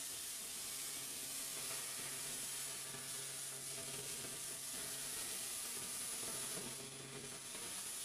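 Steady hiss of background room and microphone noise, with a faint high-pitched whine and a faint low hum.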